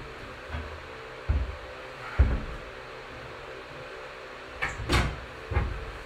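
Hands and feet slapping onto plastic climbing holds on a steep wooden bouldering board: a series of about six short, dull knocks at irregular intervals as the climber moves between holds.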